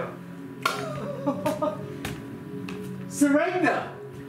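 Steady sustained background music, with a voice crying out over it twice without words, the second cry louder, near the end.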